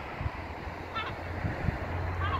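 Open-air seafront ambience: wind on the phone's microphone with a steady low rumble, and one brief faint call about a second in.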